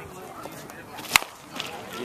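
A softball bat strikes a pitched softball about a second in: one short, sharp crack off a mishit.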